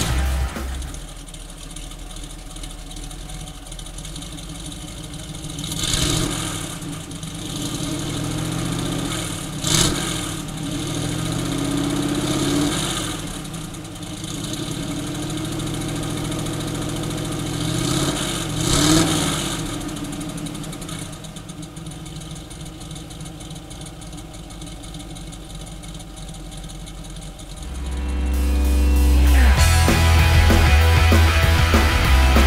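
The small-block Chevrolet V8 of a 1962 Corvette running. It is blipped up several times, then settles into a steady idle.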